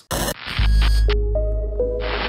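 Segment-intro sting: a short burst of static at the start, then a deep steady bass drone with a few held notes entering one after another above it.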